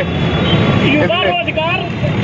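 A man's voice speaking over a steady low rumble of street noise.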